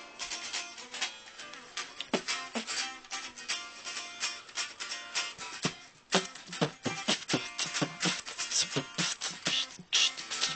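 Guitar being played: plucked notes ringing, then a run of quick, sharp strokes from about six seconds in.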